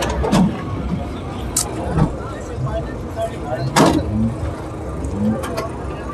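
Busy outdoor car-market ambience: distant voices and a low steady rumble of vehicles, with three sharp knocks or bumps, the loudest a little under four seconds in.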